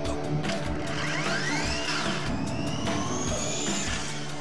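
High-pitched motor whine of a BRD RedShift electric motorcycle on track, over a guitar music soundtrack. About a second in, a whine climbs and bends back down as the bike passes. A second, longer whine then rises steadily until near the end as it accelerates.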